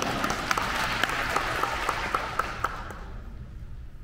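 Audience applauding, the clapping thinning out and dying away about three seconds in.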